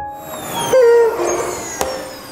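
An electric motor winding down after being switched off, its whine falling steadily in pitch, with a louder wavering tone about three-quarters of a second in.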